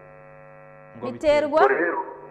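Steady electrical hum with many overtones. A person's voice cuts in about a second in and runs for roughly the last second, louder than the hum.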